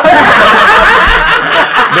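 A group of men laughing loudly together, their laughter overlapping without a break.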